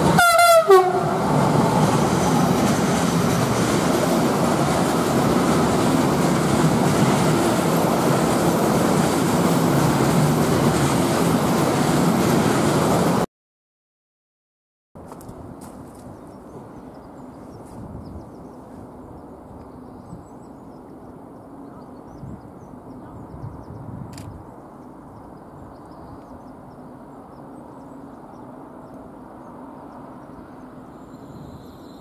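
A double-headed electric freight train passes close by, sounding a short horn blast right at the start whose pitch drops as it goes past. The loud, steady rolling noise of the wagons on the rails follows and stops abruptly after about 13 seconds. From about 15 seconds on there is only a faint steady background.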